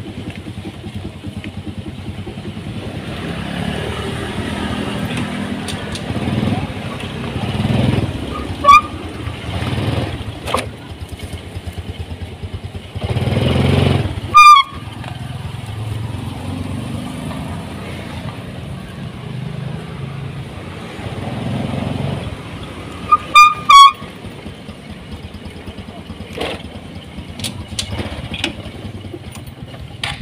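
Motorcycle running and being ridden, its engine rising and falling, on a test of the freshly bled front disc brake. Three short, very loud high-pitched squeals or beeps come about 9, 14 and 23 seconds in, the middle one bending in pitch.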